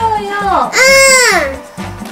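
A young girl's high-pitched voice, with one loud, drawn-out rise-and-fall call about a second in, over background music with a steady beat.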